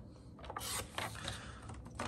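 Sliding-blade paper trimmer cutting a strip of cardstock: the blade carriage is pushed along its rail, a short, quiet scrape about half a second in, followed by a few light clicks.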